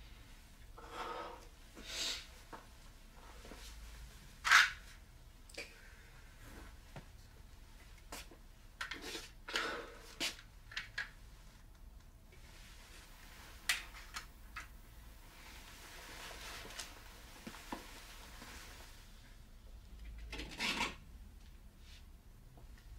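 Sporadic small clicks, knocks and rustles from a person handling small objects and moving about a kitchen. The sharpest is a single click about four and a half seconds in, with a longer rustle near the end.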